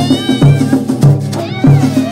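A large hand-carried drum beaten in a steady march beat, several deep strokes in the two seconds, under a group of voices singing with high wavering calls.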